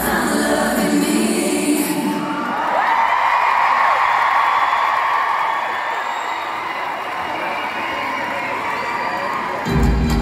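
Live pop music with a heavy bass beat for about the first two seconds. The music then drops out and a large arena crowd cheers and screams for several seconds. The bass-heavy music comes back in near the end.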